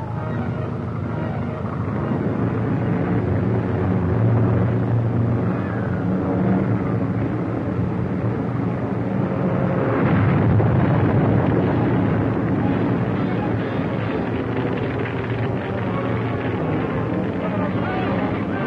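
Propeller biplane engine droning steadily in flight, swelling louder about ten seconds in.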